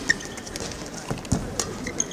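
Badminton rally on a court mat: sharp shuttlecock strikes, thuds of footwork, and short high squeaks of shoes gripping the mat.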